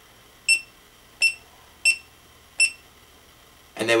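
GoPro HD Hero2 camera beeping as its mode button is pressed to step through the menus: four short, high electronic beeps, one for each press, roughly three-quarters of a second apart.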